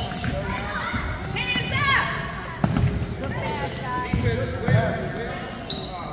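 A basketball bouncing a few times on a hardwood gym floor, each bounce a sharp thud, under shouting voices of players and spectators that echo in the gym.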